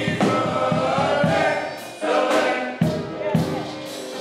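Male gospel vocal group singing in harmony through microphones over a steady low beat. The singing dips briefly about halfway through, then comes back in.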